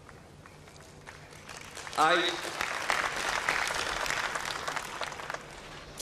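Large audience applauding, starting about a second and a half in and holding steady until it eases off near the end.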